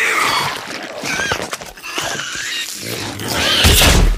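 Monster sound effect: an animal-like creature squealing and grunting over splintering noise, ending in a loud crash near the end.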